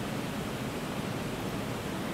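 Steady, even hiss of background room noise, with no other sound standing out.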